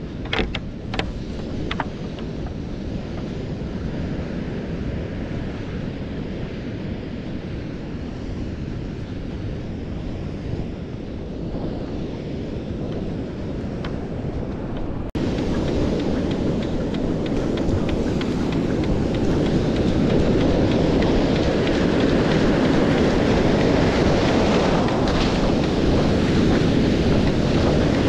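Wind buffeting a body-mounted camera's microphone over the steady wash of ocean surf, with a few sharp clicks of handling in the first two seconds. About fifteen seconds in it cuts to a louder, fuller rush of breaking waves and whitewater close by, still mixed with wind on the microphone.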